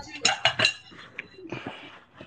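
Dishes and cutlery clinking as they are handled at a kitchen counter: a few sharp clinks in the first second, then fainter knocks.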